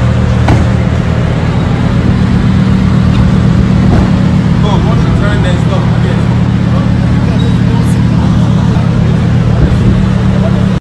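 A sports car's engine idling, a steady low drone that neither rises nor falls, with voices talking over it.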